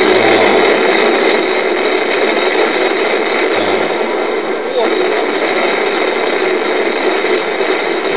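Loud, steady rushing noise, like static or wind on a microphone, from the soundtrack of a played video clip. It starts abruptly just before and runs on unchanged, with a faint voice under it.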